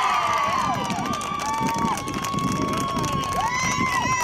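Several spectators shouting and cheering at once, their voices overlapping, with one long held high yell lasting about two seconds through the middle.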